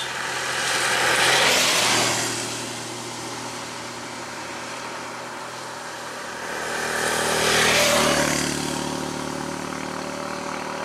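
Motor vehicles passing close by on a wet road twice, engine and tyre noise swelling and fading each time, the second pass a motorcycle, over a steady idling engine. A brief sharp click right at the start.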